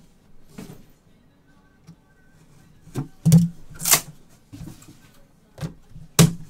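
A trading-card box handled and its lid opened, with two short loud scraping rasps about three and four seconds in.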